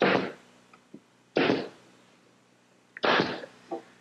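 Pneumatic brad nailer firing brads into pine back boards: three sharp shots about a second and a half apart, each a quick bang and a puff of air, with a fainter click near the end.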